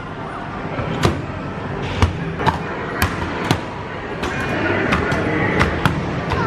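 Whack-a-mole arcade game being played: a padded mallet hits the pop-up moles about seven times, sharp thuds at uneven half-second to one-second gaps, over the game's electronic music and the din of the arcade.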